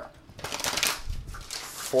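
A deck of Crystal Mandala oracle cards being shuffled by hand: a quick run of papery rustles and flicks.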